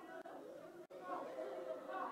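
Many voices praying aloud at once, overlapping in a large hall, with a brief audio dropout just under a second in.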